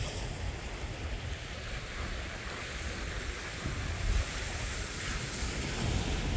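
Surf washing onto a sandy beach, a steady hiss of breaking waves, with gusty wind rumbling on the microphone.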